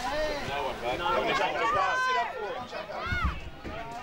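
Several voices shouting and calling over one another, some of them high-pitched and shrill, from spectators and young players at a junior football match. A brief low rumble comes about three seconds in.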